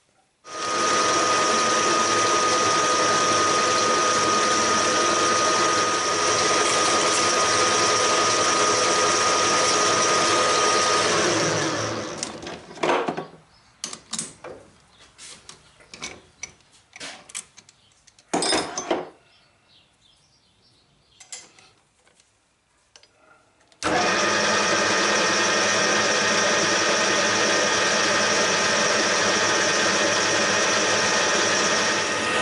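Metal lathe running steadily with a thin, high whine, then winding down. This is followed by a series of sharp metallic clicks and knocks as the three-jaw chuck is worked with a chuck key. The lathe then starts again abruptly and runs steadily.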